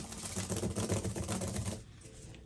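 A paintbrush being scrubbed to clean off thick oil paint: a rapid, scratchy rattle that stops shortly before the end.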